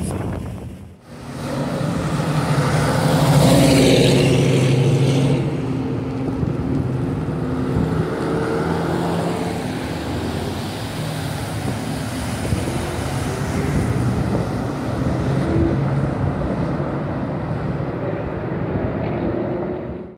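Car engines running at low speed; one vehicle passes close, loudest about three to five seconds in, after which the engine sound carries on steadily.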